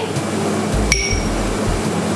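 Vegetables and vermicelli frying in a wok, with a steady hiss of frying. One sharp, ringing metallic clink comes about a second in.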